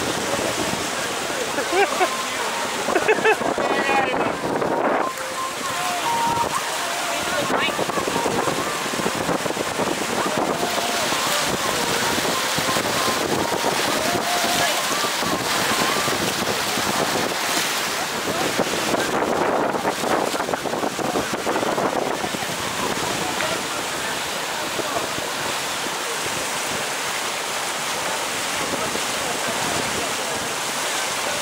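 Steady rush of wind on the microphone and water streaming past a moving boat's hull. Indistinct voices show faintly under it at times, mostly in the first few seconds.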